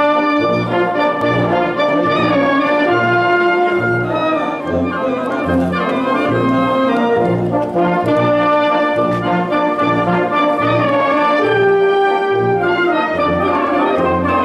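Police wind band playing, brass to the fore, with held chords over a pulsing bass line of about two notes a second.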